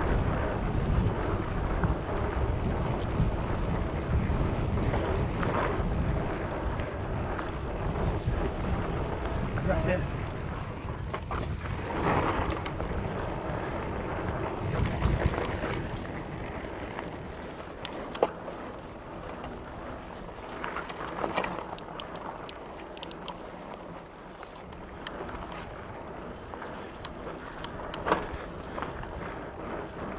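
Wind buffeting the microphone and tyres rolling over a dirt trail as a Trek Fuel EX 9.8 27.5+ mountain bike is ridden, loudest in the first half. In the second half come sharp knocks and rattles from the bike over bumps, which the rider, unsure, puts down to the suspension bottoming out because it is set too soft.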